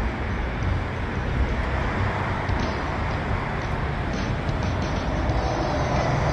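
Steady rumbling outdoor background noise with no distinct events, of the kind made by distant road traffic or wind on the microphone.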